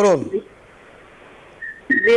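A man's voice trails off at the start. After that comes telephone-line hiss, and near the end a brief, steady high whistle tone on the line.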